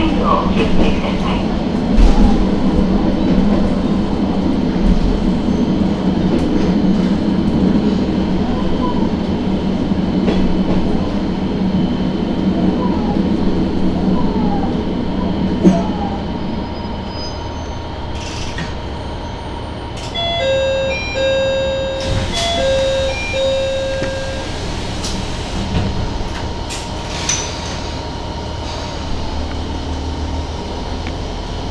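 Matsuura Railway diesel railcar running, its engine and wheel noise steady at first and then dropping away after about 17 seconds as it eases off. A little after that, a short electronic chime of several separate notes sounds inside the car for a few seconds.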